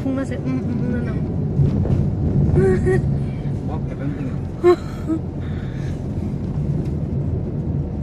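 Steady low rumble of a car driving, heard from inside the cabin, with people's voices over the first few seconds and one brief, sharp, loud sound about halfway through.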